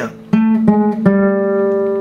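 Nylon-string classical guitar: three single notes plucked one after another, the last a step lower and left ringing. They step from the note A down a whole tone to G, the minor seventh of A minor.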